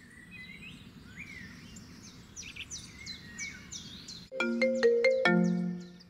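Birds chirping faintly. About four seconds in, a melodic phone ringtone of short struck notes starts ringing.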